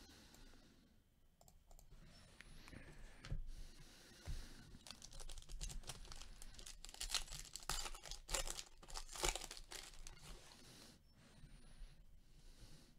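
Clear plastic wrapping crinkling and tearing as gloved hands work it open, in a dense run of crackles from about three seconds in until near the end.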